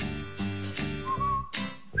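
A whistled tune, a thin wavering tone, over soft background music with a steady low bass.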